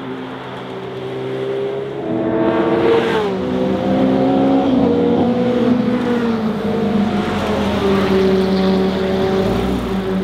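Porsche 911 GT3 RS's naturally aspirated flat-six engine, growing louder over the first few seconds, its pitch falling sharply about three seconds in, then running at lower, steadier revs.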